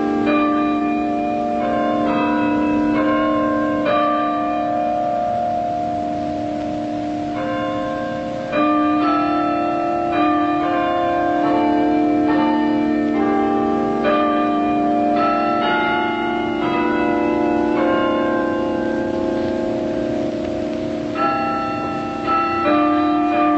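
Tower bells playing a slow tune, each struck note ringing on under the next.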